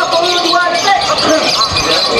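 Many people shouting and calling at once over the continuous high chattering song of contest lovebirds.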